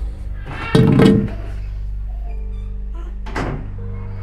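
Sustained background music with low held tones. A heavy wooden door thuds loudly about a second in, and there is a second, sharper knock just after three seconds.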